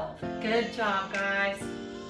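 Background music: a singing voice over guitar.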